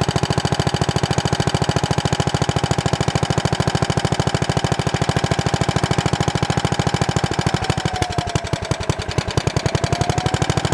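A 1936 Handiman walk-behind garden tractor's single-cylinder engine runs under load pulling a plough through wet soil, firing in a fast, even beat. About eight seconds in it slows under the load, then picks back up.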